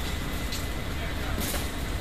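Steady low rumble of a busy, echoing hall with indistinct voices of many people and a couple of brief knocks of equipment being handled.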